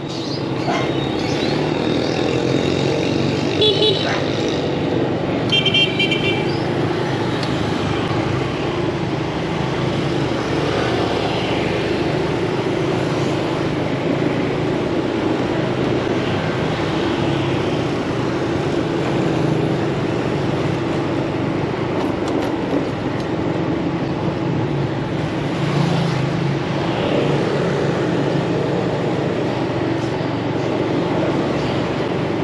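Steady city street traffic and engine hum heard on the move through a busy motorbike street. Two short vehicle-horn beeps of different pitch sound about four and six seconds in.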